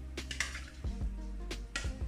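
A metal ladle knocking and scraping against a plastic jug and a frying pan while coconut milk is scooped out, about half a dozen sharp clinks, with the two loudest about half a second in and near the end. Steady background music plays underneath.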